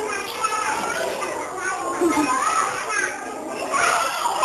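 A group of young children's voices chattering and calling out over one another.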